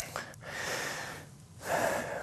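A man breathing in audibly twice between sentences, each breath a short noisy hiss, with a small click near the start.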